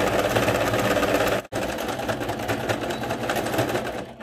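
Singer C5205 sewing machine running at a steady speed, stitching a topstitch seam along a blanket's edge. The stitching breaks off for an instant about a second and a half in, then carries on.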